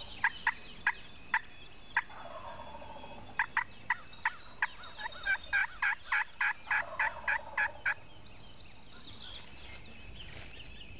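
Wild turkey calling: a few single sharp notes, then a steady run of about sixteen yelps, some three a second, that stops about eight seconds in.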